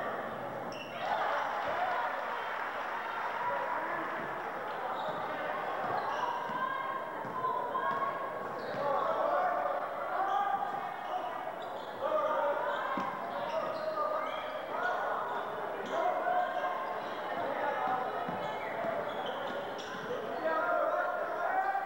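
Spectators and players shouting and calling out throughout during a high school basketball game, with a basketball bouncing on the hardwood gym floor.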